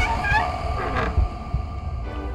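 A man's short laugh at the start, then a low hum with deep, slow thuds a little over half a second apart.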